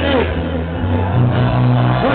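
Live rock band playing at full volume through a club PA, with held low bass notes that step up to a higher note about a second in and a sung phrase near the start.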